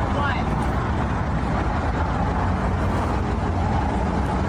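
Steady low rumble of an idling car, with faint, indistinct voices in the background.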